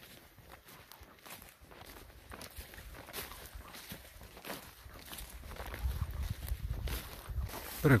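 Footsteps through grass: faint, irregular rustling steps, with a low rumble building in the second half.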